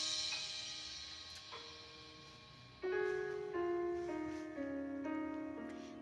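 Backing-track music with piano. Quiet held notes fade out, then a new piano passage begins about three seconds in.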